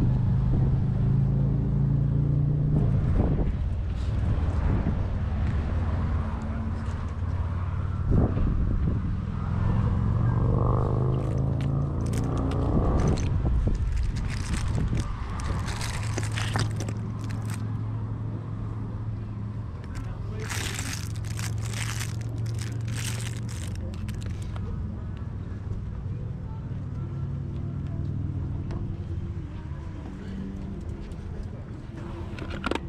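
A steady low engine hum from a vehicle running nearby. About halfway through, and again a few seconds later, come short clusters of clatter as plastic toys and trinkets are rummaged through in a box.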